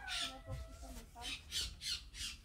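A bird squawking in a run of short, harsh calls, several a second.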